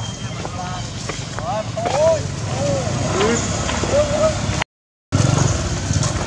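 Macaques giving short rising-and-falling calls, several in quick succession, over a low steady engine drone. The sound cuts out for half a second near the end.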